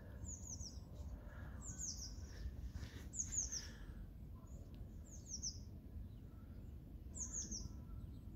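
A small songbird calling: five short phrases of three or four quick, high notes, each note falling in pitch, one phrase every second or two.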